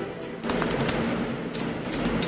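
Song intro from a karaoke backing track between musical phrases, with several bright metallic clinking strikes over a faint musical bed.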